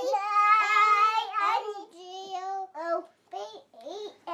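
A young child singing: one long, held line for about two seconds, then a run of shorter sung syllables.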